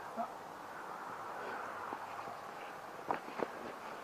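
Footsteps on a dirt and moss path, a couple of soft steps about three seconds in, over a steady faint outdoor hiss.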